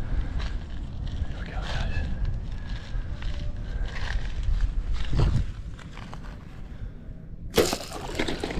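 Wind on the microphone and steps crunching on dry ground as an archer stalks with a nocked bowfishing arrow. Near the end, a sudden loud snap as the compound bowfishing bow is shot.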